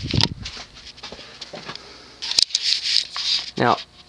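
Beverly Hills Jubilee ceiling fan with a 153x16mm Halsey motor running at medium speed, a faint steady whoosh. A little over two seconds in there is a sharp click followed by about a second of rough, hissing noise.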